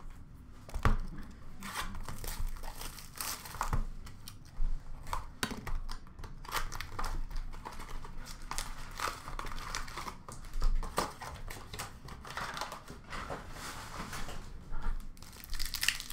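Foil trading-card pack wrappers being torn open and crumpled, crinkling steadily, with sharp clicks and taps as the cards are handled.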